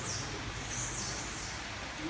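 Steady background noise with several short, high, falling chirps from a bird.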